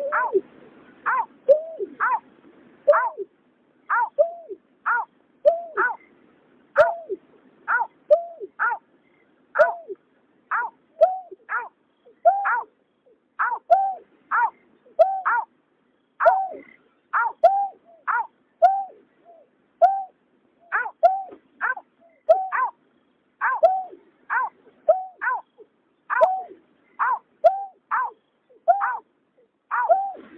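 Greater painted-snipe calling: a long series of short, hollow hooting notes repeated about two a second, each note a quick arch in pitch, with brief pauses between runs.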